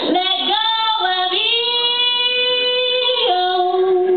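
A woman singing without words: a few quick sliding notes, then one long held note for about two seconds, changing to another note near the end.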